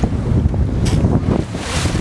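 Heavy wind buffeting the microphone on a moving boat over choppy sea, a dense low rumble with waves rushing past. Two brief hissing surges come about a second in and again near the end.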